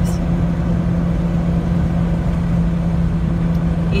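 Car driving along a highway, heard from inside the cabin: a steady low engine hum and road rumble.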